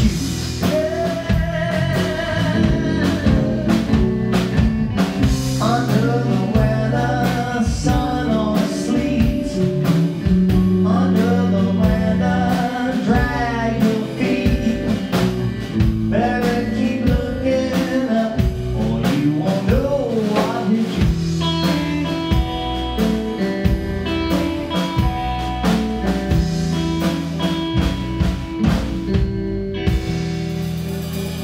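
Live blues band playing: electric guitar, bass guitar and drum kit, with a woman singing lead over most of it. In the last third, steadier held notes take over from the wavering sung lines.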